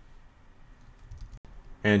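Low, steady background hiss in a pause between narration, with a brief dropout in the recording, then a voice starting to speak near the end.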